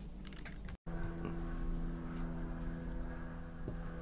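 A steady low electrical-sounding hum with faint scattered clicks, broken by a brief total dropout about a second in.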